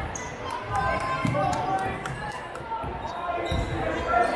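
Basketball bouncing on a hardwood gym floor, a few irregular thumps, with voices chattering in the background.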